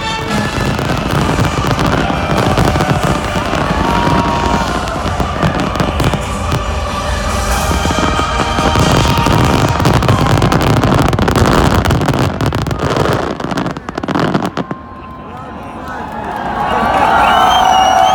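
Fireworks finale: many shells bursting at once in a dense run of bangs and crackling that stops suddenly about fifteen seconds in. A crowd then cheers and whistles, growing louder near the end.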